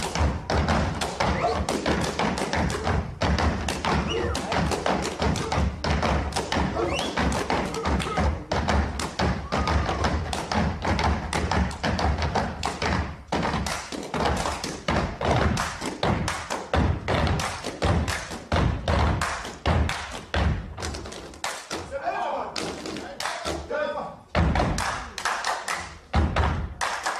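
Gumboot dancers stamping and slapping their rubber boots in rhythm: a dense run of thuds and sharp slaps, with voices calling out among them.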